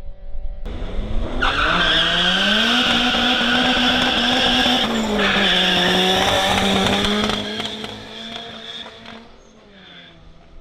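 Toyota Starlet hatchback doing a burnout: the engine revs up and is held high while the tyres squeal loudly for about six seconds. The squeal then stops and the engine eases off and fades.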